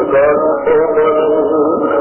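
Bengali song from a 1968 live recording: a melody that is sung, with instrumental accompaniment. It sounds muffled and thin, with no high end, as an old recording does.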